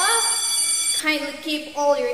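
Electronic transition sound effect: steady high ringing tones that stop suddenly about a second in, followed by a woman's voice speaking.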